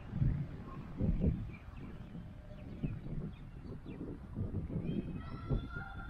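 Outdoor ambience: irregular low gusts of wind buffeting the microphone, with a few faint bird chirps. Near the end a held high-pitched tone sounds for about a second.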